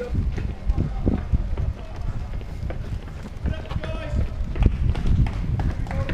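Footfalls of several people running on pavement while carrying a loaded stretcher, with irregular low thumps from the strides throughout and a brief voice-like sound about four seconds in.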